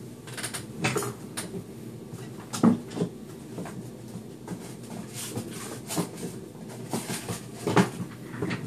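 Scattered knocks, clicks and rustles of someone rummaging through craft supplies to find a key ring. The loudest knocks come about a second in, twice just under three seconds in, and near the end.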